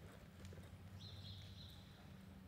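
Faint hoofbeats of a horse moving over the dirt floor of an indoor arena, over a steady low hum.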